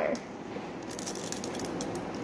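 A few light ticks as tiny water beads are dropped into the neck of a plastic water bottle, over low room noise.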